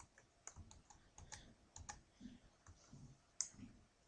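Faint, scattered clicks of a computer mouse being worked, about a dozen, with one sharper click near the end.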